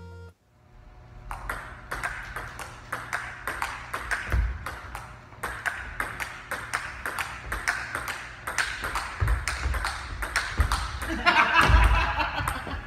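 Table tennis rally: the ping-pong ball clicks off bats and table in quick, uneven succession, with deep thumps of feet on a wooden floor. Near the end comes the loudest thump, as a player falls to the floor.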